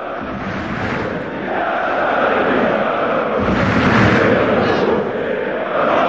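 Football stadium crowd chanting, a continuous wall of many voices that grows louder about a second and a half in.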